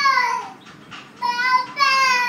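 A toddler singing in a high, loud voice: two sung phrases, each sliding down in pitch at the end.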